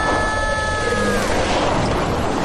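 Cartoon soundtrack of vehicles careering down a sand dune: steady rushing noise, with a single held high note that cuts off a little over a second in.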